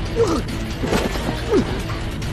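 Staged kung fu fight sound effects: a sharp hit about a second in, and two short sounds that fall in pitch, one near the start and one about a second and a half in. Steady background music runs underneath.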